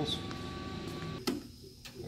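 Engine-block leak tester: a faint machine hum with a thin steady tone, then a single sharp clack a little past a second in, as the freeze-plug sealing heads are set against the block.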